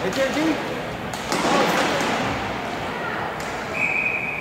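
Voices and a few sharp knocks of sticks and puck in an echoing hockey rink. Near the end, a referee's whistle blows one steady, held note to stop play.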